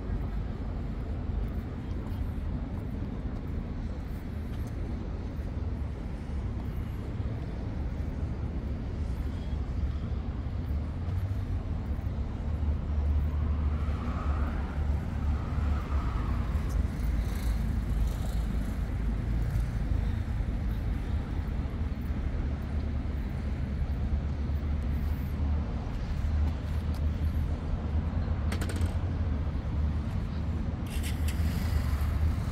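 Steady low rumble of city road traffic, growing a little louder about halfway through.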